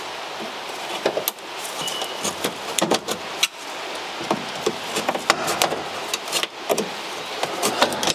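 Irregular small clicks, knocks and rattles of metal parts as the centre switch panel of a 1969 Morris Mini dashboard is worked loose by hand.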